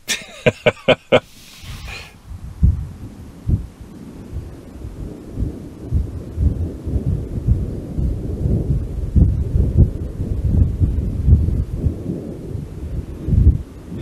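Gusty storm wind buffeting the microphone: an irregular low rumble with uneven thumps.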